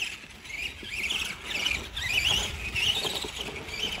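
Electric motor of a 4x4 Granite RC monster truck whining in quick rising and falling glides as the throttle is worked, over a low rumble as it drives across grass.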